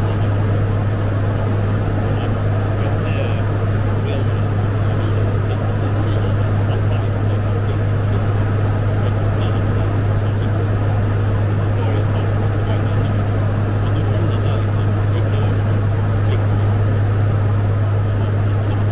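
Fokker 50 twin-turboprop at cruise, heard from the flight deck: a steady deep hum from the six-bladed propellers over a constant engine and airflow rush.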